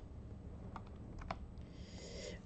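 A few light computer keyboard and mouse clicks, about three short taps in the middle, as a value is typed into a field, over a faint low hum.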